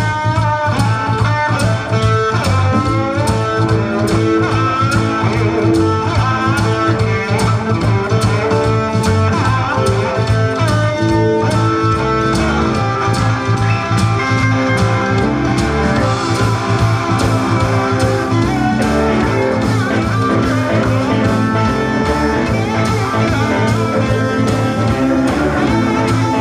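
Live blues band playing an instrumental stretch of a grooving shuffle: electric guitars over bass guitar and a drum kit, with bending lead lines near the start.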